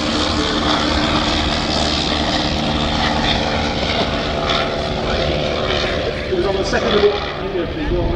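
Rotary engine of a First World War Sopwith fighter running steadily as the biplane flies low past, with commentary speech over it near the end.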